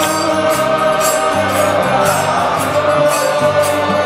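Devotional kirtan chanting: a lead voice and a crowd singing together in unison over a sustained held accompaniment, with metallic hand-cymbal strikes keeping a steady beat a few times a second.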